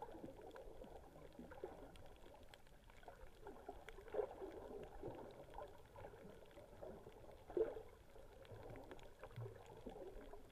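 Faint, muffled underwater sound picked up through an action camera's waterproof housing: water moving with scattered small clicks, and two louder swishes, about four seconds in and again near eight seconds in.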